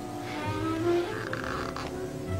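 The hinged lid of a ring box creaking open, over background music.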